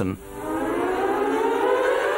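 A siren-like wail gliding slowly upward in pitch. It starts just after the speech stops and is still rising at the end.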